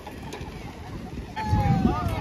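Voices of people outdoors, with one long call falling slowly in pitch in the second half, over a burst of low rumble.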